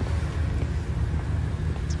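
Steady low background rumble with a faint even hiss above it, and no distinct events.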